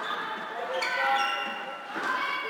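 Floorball players' shoes squeaking on the sports-hall court floor during play: several short high squeaks, with players calling out.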